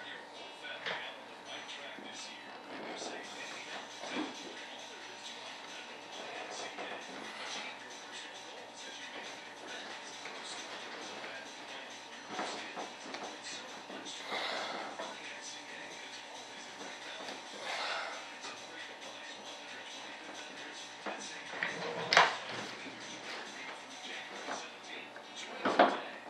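Faint background talk and music, with small handling noises and one sharp knock near the end.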